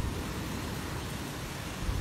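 Steady outdoor background noise: an uneven low rumble under a faint even hiss, with no distinct event.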